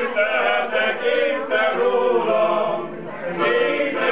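Men's choir singing sustained notes together, with a brief breath between phrases about three seconds in.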